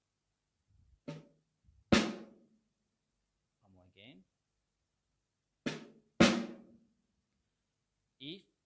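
Snare drum flam played slowly, twice: each time a light grace note from the lower left stick, then well under a second later a loud accented stroke from the raised right stick that rings out briefly.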